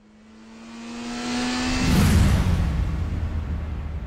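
Produced vehicle fly-by sound effect: a humming drone swells into a loud whoosh that peaks about two seconds in, then falls away into a low fading rumble.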